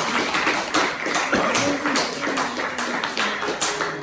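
Audience applauding: a dense, irregular patter of many hands clapping, with a few voices mixed in.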